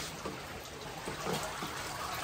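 Floodwater trickling and running steadily.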